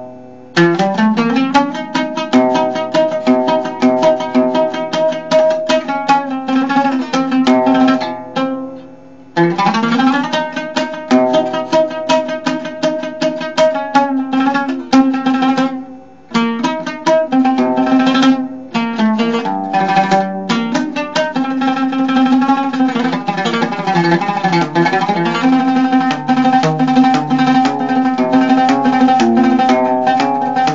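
Solo oud played with a plectrum: fast runs of plucked notes, with short pauses about 9 and 16 seconds in.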